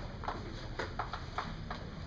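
Chalk writing on a blackboard: a quick, irregular run of sharp taps and short scratches, several a second, as the letters of a word are written.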